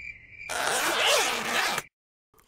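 Cartoon zipping sound effect of a line running out fast as a hook on a rope is lowered, starting about half a second in and cutting off suddenly near the end.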